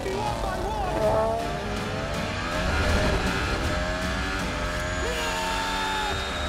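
Red Bull Honda Formula 1 car's turbocharged V6 running at high revs, its pitch rising and falling, with voices over it.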